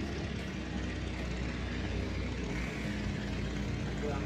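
Steady low droning noise with no speech.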